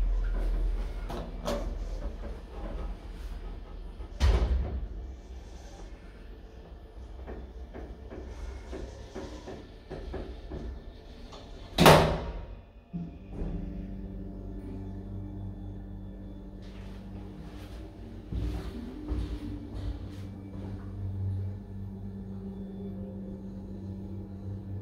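Automatic sliding doors of a WDE hydraulic lift closing, a few lighter knocks early on and a loud thud about halfway through as they shut. Right after it, a steady low hum sets in from the hydraulic drive as the cab starts to travel.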